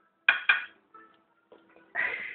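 Metal fork clinking twice against a dinner plate, in quick succession, with a short ring after each.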